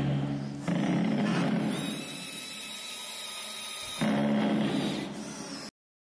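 Cordless drill running in bursts as it drives fasteners into a wooden climbing-wall panel, with a steady motor whine between the louder runs. The sound cuts off abruptly shortly before the end.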